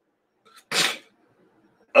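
A man sneezing once: a faint catch of breath, then a single short, sharp burst of noise a little under a second in.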